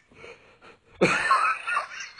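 A person's wheezing laugh, starting about a second in after a mostly quiet first second, with a few shorter bursts after it.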